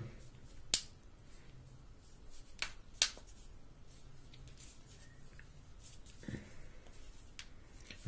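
Plastic back cover of a Samsung Galaxy S5 being pressed and snapped into place on the phone: a few sharp clicks, three within the first three seconds and a fainter one near the end, as the cover is seated to close the water-resistant seal.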